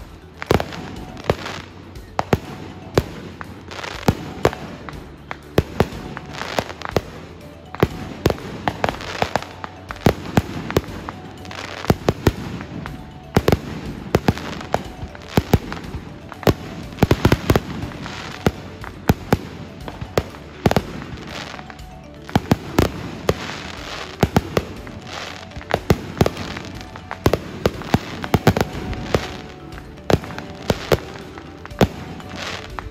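Aerial fireworks bursting overhead in a continuous barrage: a dense, irregular run of sharp bangs, often several a second, with no let-up.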